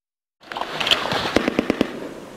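A rapid, irregular run of sharp cracks of gunfire over a noisy outdoor din, starting about half a second in and coming thickest in the second half.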